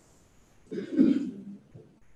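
A person coughs once to clear their throat, a single short burst about a second in.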